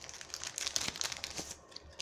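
Wrapper of a 2016 Elite trading card pack crinkling as it is handled, a dense run of small crackles that dies down near the end.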